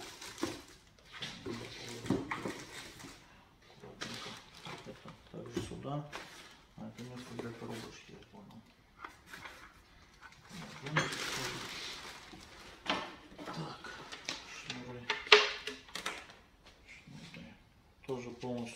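Packaging being handled as items are packed into a cardboard box: rustling, clicks and knocks, with a rustling stretch about eleven seconds in and a sharp knock about fifteen seconds in, the loudest sound. A man's voice mutters at times.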